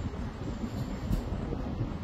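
Steady low rumble of room noise in a hall, with no distinct events.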